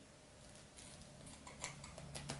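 Scissors snipping through thick legging fabric: a series of faint cuts, starting about half a second in and growing a little louder toward the end.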